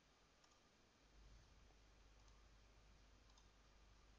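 Near silence: faint room tone with a low hum that starts about a second in, and a few faint clicks.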